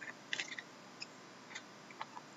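Hockey trading cards being slid and flipped against each other in the hands: a few faint scratchy clicks and rustles, the loudest cluster about a third of a second in, then single light ticks.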